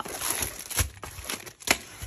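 Paper and plastic packaging rustling and crinkling as a rolled diamond-painting canvas is unwrapped from its paper sleeve, with a few sharper crackles, the loudest near the end.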